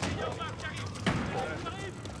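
Several people shouting and calling out over one another, voices overlapping as they scatter, with one sharp bang about a second in.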